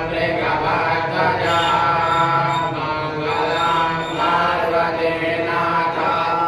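A male priest chanting Sanskrit puja mantras into a microphone, in a continuous melodic recitation with long held notes.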